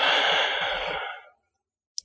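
A man's hesitant "uh" trailing into a long breathy sigh as he thinks, fading out just over a second in.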